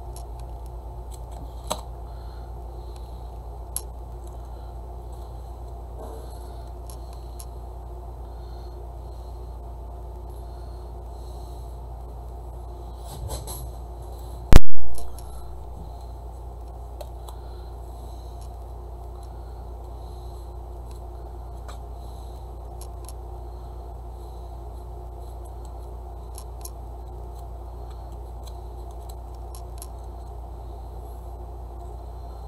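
Faint handling of yarn trims on a craft table, with a few light clicks over a steady low hum. About halfway through comes one very loud, sharp pop that dies away within half a second.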